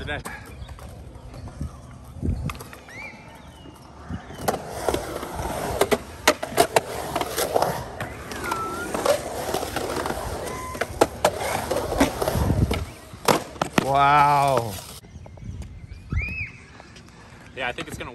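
Skateboard wheels rolling through a concrete skate bowl for about ten seconds from around four seconds in, with many sharp clicks and clacks along the way. A voice calls out once in a long wavering cry near the end of the ride.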